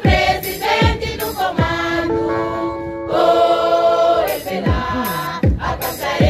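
A chorus of women's voices singing together in held notes, with a drum beating a few low strokes under the song.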